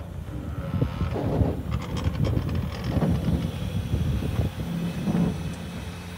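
Footsteps on gravel, about one step every 0.7 s, over an uneven low rumble.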